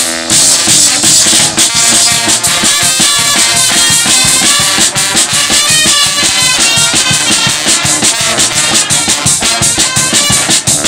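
Limburg carnival brass band (zaate hermenie) playing live: trombones, trumpets, baritone horns and a sousaphone carry the tune over a steady snare drum and cymbal beat.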